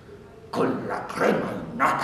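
A man's voice making three short wordless vocal outbursts in quick succession.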